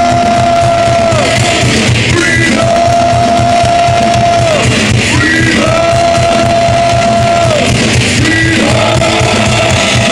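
Heavy metal band playing live, with distorted guitars and drums. Over it, a singer holds four long notes, each about two seconds and dropping in pitch at the end.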